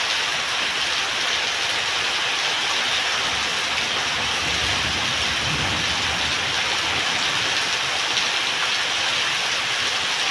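Heavy rain falling steadily on a concrete yard and roofs, with runoff pouring off a roof edge and splashing onto the wet ground. A low rumble swells about four seconds in and dies away a few seconds later.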